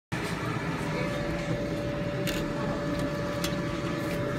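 A steady mechanical hum with a faint steady whine running through it, and a few light clicks of handling about two and a half to three and a half seconds in.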